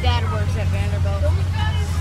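Bus engine running with a steady low rumble, heard from inside the cabin, under passengers' voices talking.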